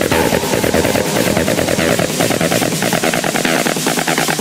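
Techno in a DJ mix: a rapid roll of percussive hits, machine-gun-like, with the bass cut away, as in a build-up.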